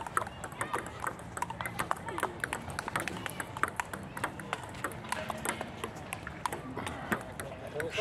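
Table tennis rally: a celluloid ball clicking off paddles and the table in quick irregular strikes, mixed with more clicks from play at neighbouring tables.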